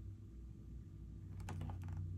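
A picture book's paper page being turned: a short run of faint, papery clicks about a second and a half in.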